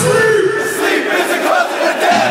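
Concert crowd shouting along loudly as the backing beat drops out, heard from among the audience.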